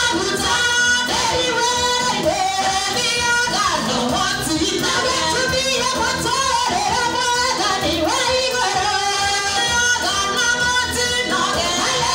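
A woman singing a song through a handheld microphone, her voice holding and sliding between notes over musical accompaniment.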